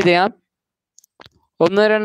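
A man talking, with a pause of about a second in the middle broken by a few faint clicks.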